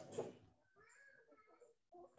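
Near silence, with a brief soft noise at the start and a faint, high-pitched wavering call about a second in.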